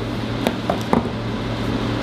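Steady room hum, like an air conditioner running, with a couple of faint ticks about half a second and a second in.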